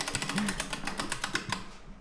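Ratchet wrench pawl clicking rapidly as the handle is swung back on the socket, the clicks thinning out and fading about a second and a half in.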